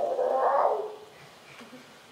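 A person's drawn-out wordless vocal sound, rising and then falling in pitch, lasting about a second near the start.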